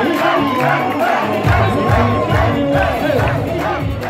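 Wedding crowd shouting and cheering in rising-and-falling calls over loud Kabyle dance music. A heavy bass beat comes in about a second and a half in, and the mix starts to fade near the end.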